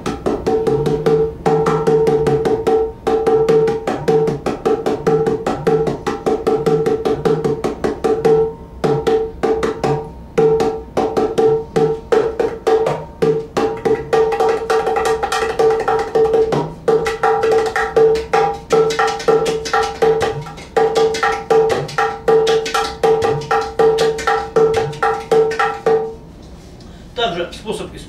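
A Cajudoo, a clay udu pot with a thin plywood playing head, hand-played in a fast, continuous rhythm. Dense finger strokes on the wooden head ring at one steady pitch, while deep bass tones come and go as the pot's hole is opened and closed to change its tone. The playing stops about 26 seconds in.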